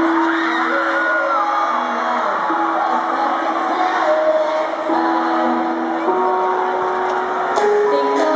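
Live concert music over a large PA: slow, held keyboard notes stepping from one pitch to the next, with an arena crowd cheering and screaming over it, the loudest shrieks in the first two seconds.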